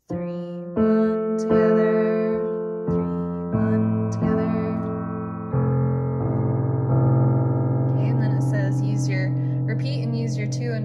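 Digital piano with the damper pedal down, playing F and A loudly: first one note, then the other, then both together, in three groups that each step lower down the keyboard. The notes ring on and overlap, and the last pair is held.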